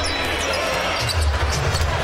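A basketball being dribbled on a hardwood arena court over the steady noise of a large indoor crowd.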